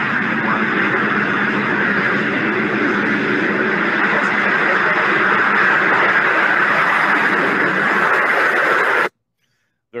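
Continuous loud roar of a rocket launch following a countdown, holding steady and then cutting off abruptly about nine seconds in.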